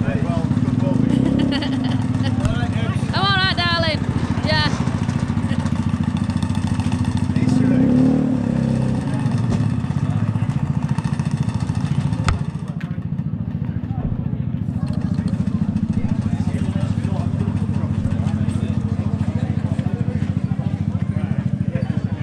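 Two-stroke scooter engine idling steadily close by, with a brief blip of revs about eight seconds in; it stops at the end.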